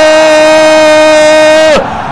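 A male football commentator's goal call: one long shout held at a steady pitch, breaking off near the end.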